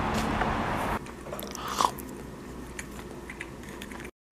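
About a second of steady outdoor street noise, then a cut to a quiet room with scattered small crunches and clicks of someone chewing food, the loudest just under two seconds in.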